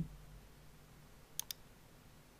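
Two quick clicks of a computer mouse button, close together, about a second and a half in, over faint room tone.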